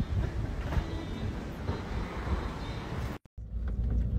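Uneven low rumble of outdoor noise on a phone recording. It breaks off about three seconds in, and after a brief gap a car's low road rumble follows, heard from inside the moving car.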